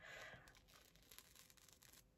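Faint peeling of a black peel-off blackhead mask from the skin: a soft tearing crackle in the first half second, then a few faint crackles.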